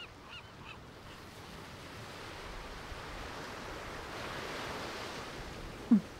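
A few short honking bird calls fade out in the first second, then a steady rushing wind noise swells gently and holds.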